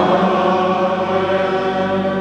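Liturgical chant: one long sung note, held steadily after gliding up into pitch.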